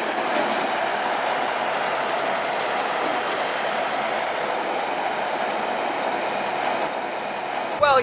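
A truck's engine and hydraulic bin lifter running as it tips a large plastic bin, a steady, even mechanical noise that cuts off abruptly near the end.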